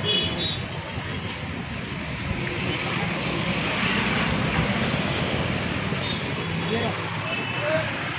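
Steady noise of a busy street: traffic and background voices, swelling a little around the middle.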